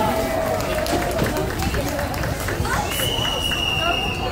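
Audience voices under a tent, with a quick run of sharp taps in the middle. A steady high tone starts about three seconds in and holds for just over a second.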